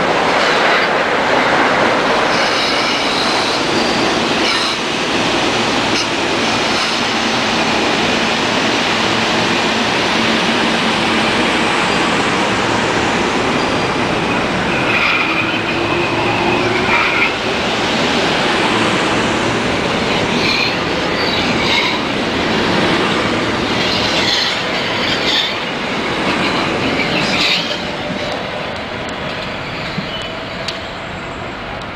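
Metro-North electric multiple-unit commuter train passing close along a station platform: a loud, steady rush of wheels on rail and running gear. Brief high-pitched wheel squeals come through in the second half, and the sound eases slightly near the end as the train moves away.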